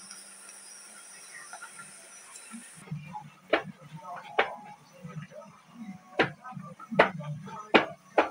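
A metal spoon knocking against a steel cooking pot while stirring, about five sharp clinks spaced roughly a second apart in the second half, over a low steady hum. Before them only a faint steady hiss.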